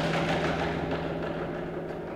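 A contemporary chamber ensemble of winds and percussion plays: a sharp percussion strike at the start rings on over a steady held low note and a sustained chord. A fainter second strike comes near the end.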